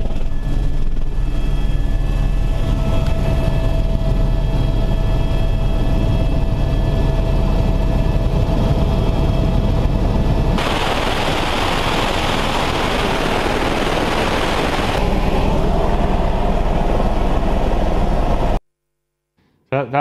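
Helicopter cabin noise: a loud, steady low drone from the rotor and engine with a few thin steady whine tones over it. About ten seconds in, a louder rushing hiss joins for some four seconds before the plain drone returns, and the sound cuts off suddenly near the end.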